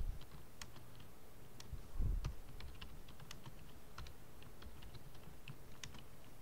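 Computer keyboard typing: irregular, light keystroke clicks as short lines of text are entered. A single low thump about two seconds in.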